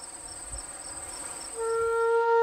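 Insects trilling in one steady high-pitched note, with a fainter chirp repeating a few times a second. A flute melody comes in about one and a half seconds in.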